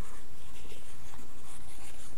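Steady scratchy rubbing of a stylus moved across a drawing tablet while the on-screen writing is erased.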